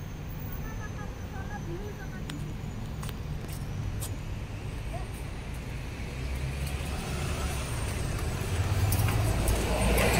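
Road traffic: a steady low rumble of passing vehicle engines and tyres that grows louder over the second half, loudest near the end.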